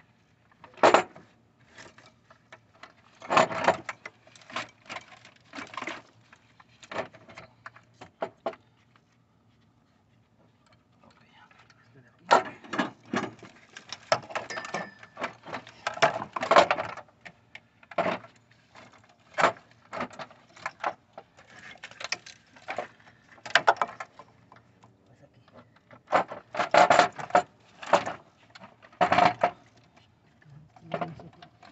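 Irregular clicks, knocks and rattles as the valve cover of a 2007 Hummer H3's 3.7 engine and the plastic wiring-harness connectors around it are shifted and worked out by hand. There is a pause of a few seconds near the middle.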